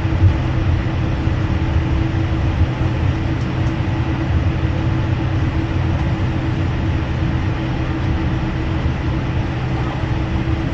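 Steady cabin noise of a jet airliner taxiing slowly: the engines' idle hum over a low rolling rumble, with a steady mid-pitched tone running through it.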